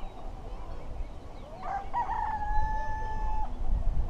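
A rooster crowing once: a rising start, then one long held note of about two seconds, beginning about a second and a half in. A low rumble runs underneath.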